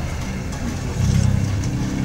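A low engine-like hum, steady in pitch, growing louder about a second in.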